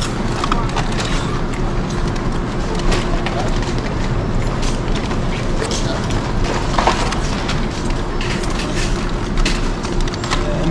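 City street noise: a steady traffic rumble with a constant hum, scattered small clicks, and faint voices in the background.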